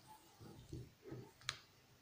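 A single sharp click about one and a half seconds in, with a few faint low handling bumps before it, in a quiet room.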